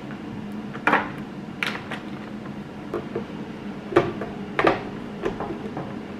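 Eggs being set one at a time into a clear plastic egg holder: short, light clicks of eggshell on hard plastic, about one a second.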